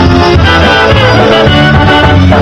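Polka band music playing at a steady, loud level.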